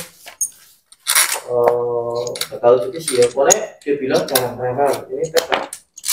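Small loose metal engine parts, bolts and washers, clinking sharply as they are handled and set down, with a man's voice talking over most of it.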